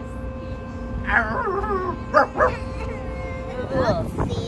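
A person's voice making wavering, howl-like calls, with two short sharp cries just after the middle, over a steady hum and a low rumble of wind on the microphone.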